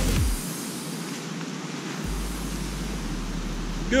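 Electronic background music ends about half a second in, followed by a steady outdoor hiss with a low rumble coming in about two seconds in.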